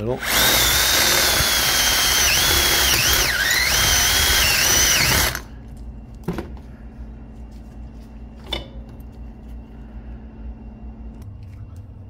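Power drill boring a large hole through the flattened end of a copper pipe held in a vise: a loud, high whine for about five seconds that dips in pitch a few times as the bit bites, then cuts off suddenly. A couple of short knocks follow.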